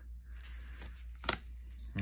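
Handling of a stack of trading cards: soft sliding and rustling as they are set down on a pile, with a sharp tap a little past a second in.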